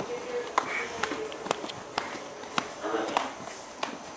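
An American Saddlebred gelding walking on a straw-bedded barn floor: a few scattered, irregular hoof steps, with faint voices in the background.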